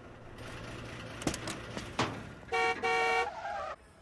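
Car horn honking twice in quick succession about two and a half seconds in, over a steady hum of city traffic, from an animated cartoon's soundtrack.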